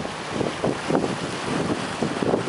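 Wind buffeting the microphone in irregular gusts over the wash of the sea.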